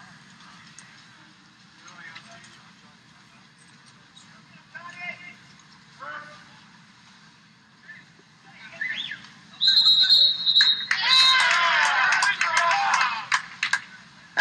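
Low steady background hum with faint distant voices from the pool deck. About ten seconds in, a referee's whistle gives one long, steady blast, calling an exclusion. Loud shouting from the crowd follows it.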